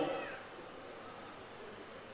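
A pause in an amplified speech: the last word fades out at the start, and then only faint, even background noise remains. Near the start there is one brief, faint, falling high-pitched sound.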